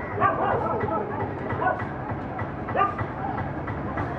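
Indistinct voices in short bursts over a steady low background rumble of outdoor noise.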